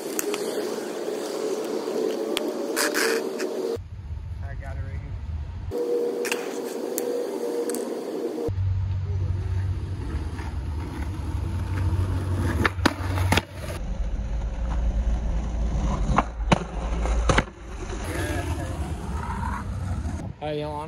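Skateboard wheels rolling on asphalt, with several sharp clacks of the board between about twelve and seventeen seconds in. The rolling sound changes abruptly several times.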